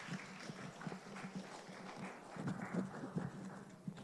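Congregation clapping: a spread of scattered hand claps that cuts off abruptly near the end.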